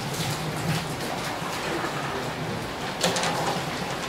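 Rustling and handling noises as papers and a table microphone are moved, picked up through the microphone over a steady low hum of room or PA noise, with a short louder rustle about three seconds in.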